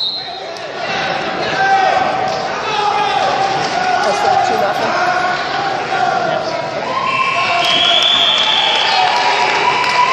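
Several voices calling out at once, echoing in a large sports hall, as two wrestlers grapple, with some thuds on the mat. A few held shouts come in from about seven seconds in.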